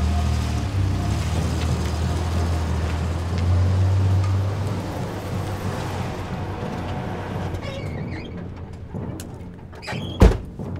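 A car's engine running as it pulls up and stops: a low steady hum, strongest for the first few seconds, then fading away. Near the end come faint light sounds as the driver gets out of the car.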